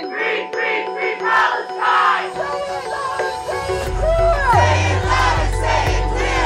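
Crowd chanting over a song with singing and held tones; a deep bass line comes in about halfway through.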